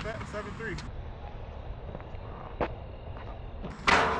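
Outdoor background noise with brief low voices in the first second. A single sharp knock comes a little past halfway, and a louder sharp hit just before the end.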